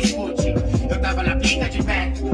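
Hip hop track with rapping over a drum beat, mixed as 8D audio that pans the sound around the listener. The deep bass drops out briefly at the start and comes back about half a second in.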